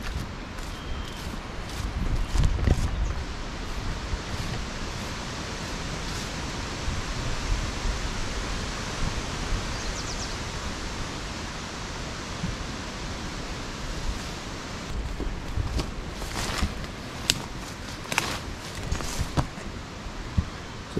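Steady outdoor hiss of wind and leaves, with low gusts of wind on the microphone about two seconds in. Near the end come a run of sharp rustles and snaps of brush close by, as of someone walking through thick undergrowth.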